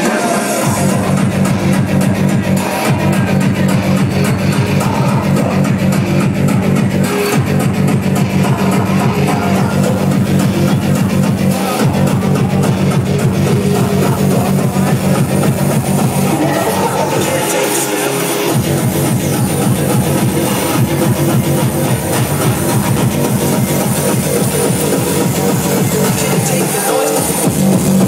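Loud gabber/frenchcore hard-dance music over a club sound system, driven by a fast, dense kick drum with heavy bass. The kick and bass drop out for about a second roughly two-thirds of the way through, then come back.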